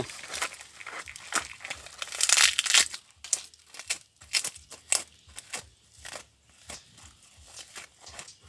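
Dry skin of a loofah sponge gourd crackling and tearing as it is peeled and squeezed off by hand, in irregular crackles, thickest about two to three seconds in and sparser after.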